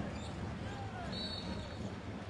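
Basketball game court sound: a ball being dribbled on a hardwood floor over arena crowd murmur, with a brief high squeak about a second in.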